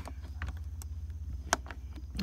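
A few light clicks from keys and a padlock being handled just after the crawl-space hasp is locked, one sharper click about a second and a half in, over a low steady rumble.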